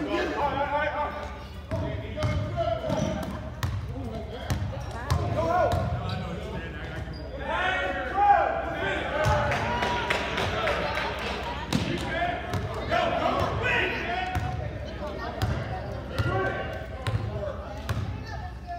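Basketball being dribbled and bouncing on a gym floor during a game, with repeated sharp bounces, amid the steady shouting and chatter of players and spectators in a large gym.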